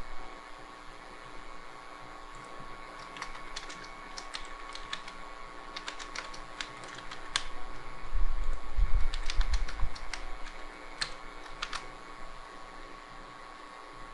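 Computer keyboard typing: scattered key clicks over a steady machine hum. A low rumble swells about eight seconds in and lasts a couple of seconds.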